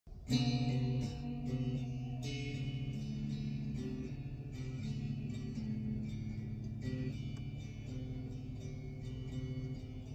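Electric guitar playing a slow instrumental intro, chords struck roughly once or twice a second and left to ring.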